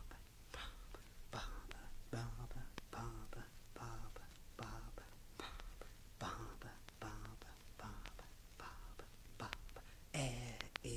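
A man whispering a chant, repeating short syllables in a steady rhythm.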